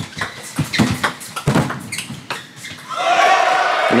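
Table tennis rally: sharp ticks of the ball striking paddles and the table, several a second, echoing in a large hall. About three seconds in the point ends and the crowd breaks into cheering and shouting.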